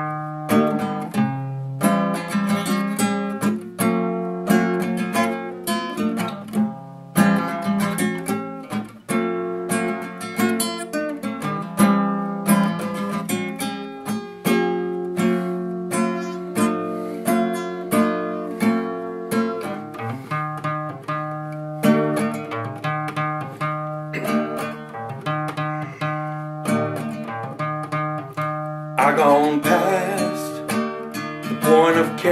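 Nylon-string classical guitar played fingerstyle with the low E string tuned down to D: a continuous run of plucked melody notes over ringing bass notes. Near the end a man's voice comes in with a wavering sung note.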